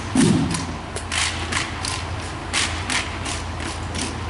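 Rifle drill squad's rifle handling and boot steps on a hardwood gym floor: a heavy thud right at the start, then a string of sharp slaps and clicks spread unevenly as the squad rises and marches.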